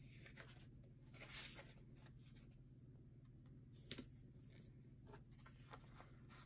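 Faint handling of paper sticker sheets on a tabletop: a soft rustle about a second in and one sharp tap a little before the four-second mark, over a low steady hum.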